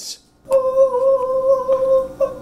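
A person's voice holding one steady sung note, an open 'ahh', starting about half a second in and held for about two seconds.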